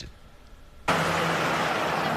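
Steady highway traffic noise from vehicles and trucks on an elevated turnpike, starting suddenly about a second in after a quieter moment. The traffic is loud where a section of the noise barrier is missing.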